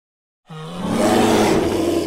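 A bear's roar, used as an intro sound effect: a loud, rough roar that starts about half a second in, swells, holds and breaks off at the end.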